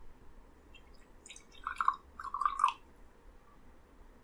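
Liquid poured from a glass bottle into a small terracotta cup, glugging in two short bursts, the first just over a second in and the second about a second later.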